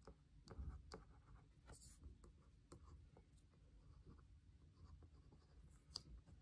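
Faint scratching and light taps of a stylus writing on the plastic surface of a Boogie Board Blackboard LCD writing tablet.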